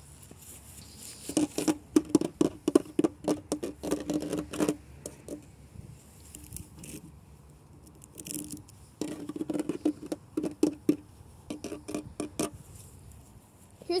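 Fingers tapping rapidly on a hollow plastic swing seat, in two long runs of quick sharp taps with a low ringing note under them.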